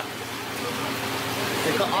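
Steady rush of running water from aquarium holding tanks, with a low steady hum under it.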